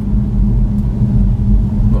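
Road and tyre noise inside the cabin of a BMW i3 electric car driving at about 25 mph and slowing: a steady low rumble with a steady hum.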